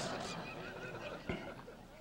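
Faint room sound in a pause between speech: a low murmur that fades out, and a single soft knock just over a second in.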